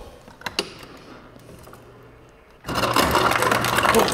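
Refrigerator door ice dispenser: a couple of faint clicks, then about two-thirds of the way in the dispenser motor starts with a steady hum and ice clatters out loudly.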